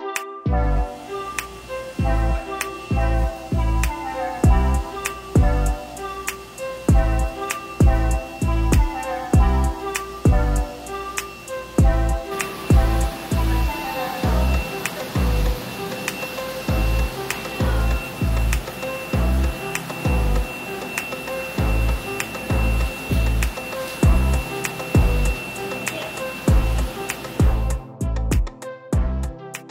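Background music with a steady electronic beat, about two bass pulses a second under melodic synthesizer notes.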